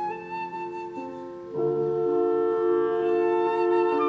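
Concert flute playing held melody notes with a small chamber ensemble. About a second and a half in, the accompaniment swells into a louder, fuller chord.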